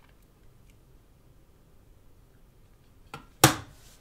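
Quiet room tone, then near the end a faint click and a single short, sharp puff of breath into the microphone, a sigh or exhale of boredom while a benchmark runs.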